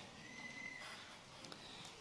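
Very quiet room tone with faint hiss, and a faint, brief high steady tone about half a second in.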